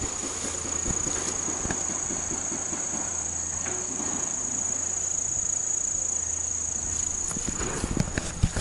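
Insects droning in roadside vegetation: one steady, high-pitched buzz that holds unbroken, with faint low rustles and knocks underneath.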